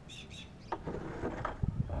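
Two short, high bird chirps, then knocking and low thumps as a plastic milk crate is pulled off the dock and lifted into the boat, the heaviest thumps near the end.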